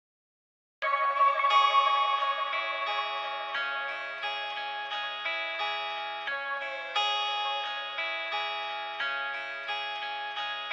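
Hip-hop beat intro: a guitar melody with chorus and echo effects starts just under a second in. Its notes are struck in an even, repeating pattern about every two-thirds of a second, each one fading before the next.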